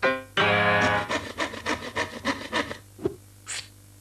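Commercial sound effects: a short pitched musical hit and a held note, then a run of dry crunching, rasping clicks, about four or five a second. A low knock and a brief high click come near the end.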